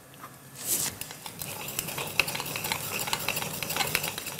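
Kitchen utensils at work over a pot of hot milk and potatoes. A short grinding rasp from a nutmeg mill comes about half a second in, then a run of light irregular clicks and scrapes from a metal potato ricer pressing cooked potatoes into the pot.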